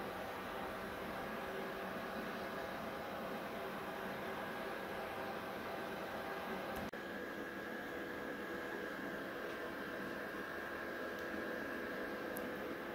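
Steady whirring hum and hiss of a gaming PC's cooling fans, with several faint steady tones, broken once by a brief dropout about seven seconds in.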